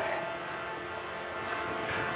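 Steady background drone with faint held tones and no words.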